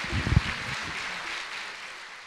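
Audience applauding, an even clatter that slowly dies down, with a few low thumps in the first half second.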